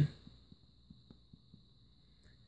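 Quiet pen strokes on paper, a few faint soft taps, over a faint steady high-pitched whine.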